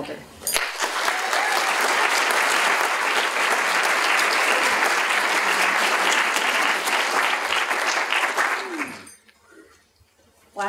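Lecture-hall audience applauding, starting about half a second in, holding steady and dying away near the end.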